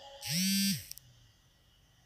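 A short electric buzz, about half a second long, that rises in pitch, holds, then drops away, just after the music stops.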